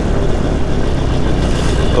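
Moster 185 single-cylinder two-stroke paramotor engine running steadily in flight, with wind rushing over the microphone.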